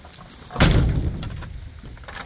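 A single sudden thump about half a second in, deep and loud, fading away over about a second.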